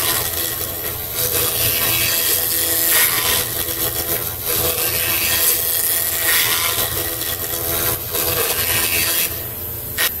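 Five-axis CNC machine's spindle carving solid wood with a long cutter: a steady hum under a harsh cutting rasp that swells and eases with each pass. The cutting noise drops away near the end.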